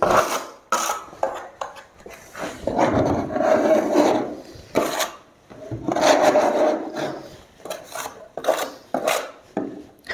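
Spatula scraping and scooping gypsum plaster in a plastic bucket: a run of short sharp scrapes and knocks, with two longer scraping strokes, one a few seconds in and one in the middle.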